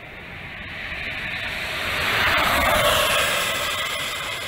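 A road vehicle passing by: its tyre and road noise swells steadily to a peak about two and a half seconds in, then begins to fade.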